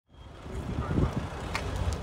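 Outdoor ambience fading in: a low rumble with faint, indistinct voices.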